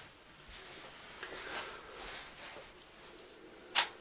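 Faint rustling of a camera on its tripod being handled, then one sharp click near the end.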